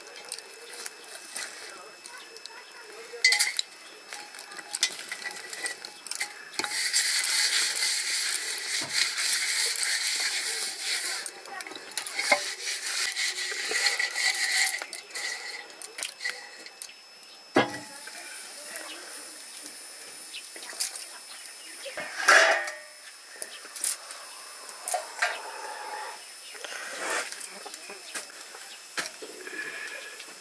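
Steel pots and dishes clinking and knocking, with a few sharp knocks and, in the middle, about eight seconds of steady hiss.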